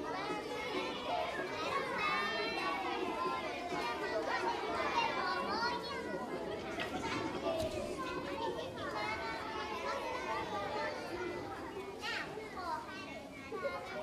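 A crowd of children chattering and calling out at once, many high voices overlapping.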